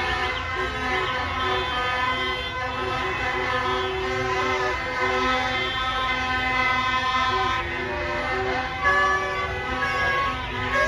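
Many car horns honking at once in overlapping long and short blasts of different pitches, over engine rumble and voices from a street crowd: cars honking in celebration in a slow-moving convoy.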